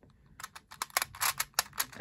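Rubik's Clock puzzle worked by hand: a quick run of sharp plastic clicks, about ten a second, as its dials are turned, starting about half a second in.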